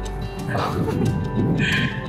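Background music with sustained tones, and a person's short, high-pitched exclamation near the end.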